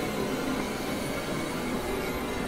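Experimental electronic noise music: a dense, steady wash of noise dotted with brief held tones at many pitches, a texture close to grinding rail noise.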